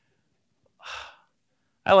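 A man's single short, breathy intake of air close on a clip-on microphone, about a second in, in an otherwise near-silent pause.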